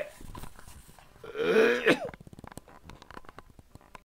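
A man coughing, the loudest cough coming about a second and a half in, followed by a run of small quick clicks.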